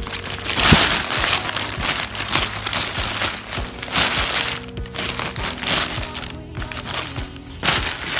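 Paper grocery bag and mesh produce bag crinkling and rustling in bursts as fruit is handled and unpacked by hand, the loudest rustle about half a second in, over steady background music.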